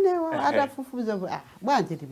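A woman speaking expressively, her voice swinging high and low in pitch. The words are not transcribed.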